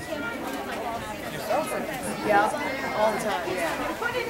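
Several people talking at once, with overlapping chatter and no single clear voice.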